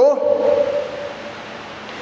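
A man's voice holding out the last vowel of a word as one steady tone that fades after about a second, then a short pause with faint hiss.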